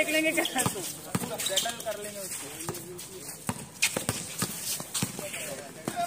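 A basketball bouncing repeatedly on a concrete court, roughly one sharp bounce every half second, under players' shouted calls.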